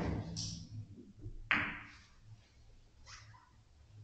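Billiard balls knocking together on a carom table after a cue shot. There is a sharp click about a third of a second in, a louder clack about a second and a half in, and a softer click about three seconds in.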